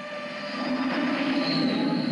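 A swelling sound effect: a rumbling hiss that builds through the two seconds, with a high squealing tone about one and a half seconds in, over soft orchestral music.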